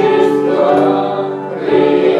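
Several voices singing slowly together in a church service, each note held.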